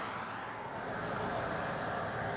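Faint, steady vehicle noise in the background, an even rumble with no distinct events.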